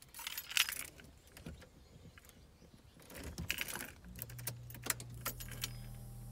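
Car keys and key ring jangling and clicking in the ignition as the key is turned, in two short bursts. A steady low hum starts about four seconds in.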